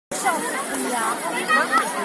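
Several people talking at once in Turkish, their voices overlapping.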